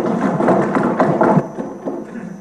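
Members thumping their wooden desks in applause, a dense clatter of knocks that dies down after about a second and a half.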